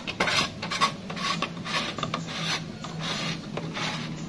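Plastic rubbing and scraping in quick, irregular strokes as a hand twists and presses a small round plastic cap at the centre of a quartz wall clock's dial, over a steady low hum.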